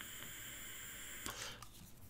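Faint steady hiss of a draw on an e-cigarette, ending about a second and a half in, followed by a couple of light clicks.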